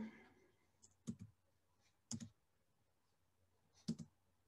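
Faint computer mouse clicks, three of them about a second apart, in near silence.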